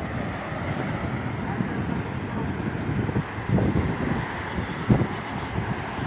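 Wind buffeting a phone's microphone in gusts over the steady wash of surf breaking on a sandy beach.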